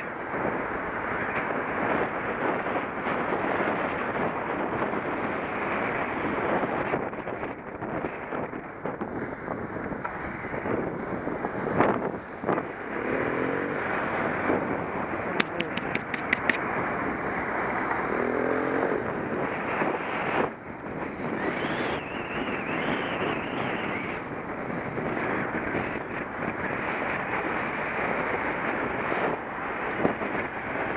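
Wind rushing over a bicycle-mounted camera's microphone while riding along a road, steady throughout. About halfway through there is a quick run of clicks, with two short pitched sounds either side of it.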